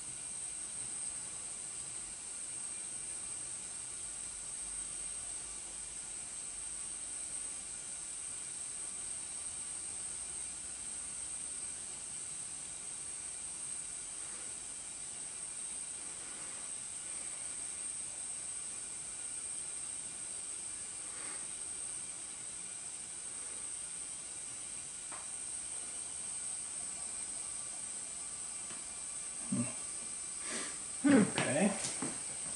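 A steady high-pitched hiss that does not change, with a few faint taps.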